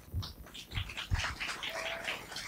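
Audience applause starting about half a second in and growing denser, with a few low thumps under it.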